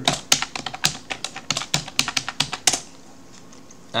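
Computer keyboard keys clicking in a quick run of keystrokes as a password is typed and Enter pressed, stopping a little under three seconds in.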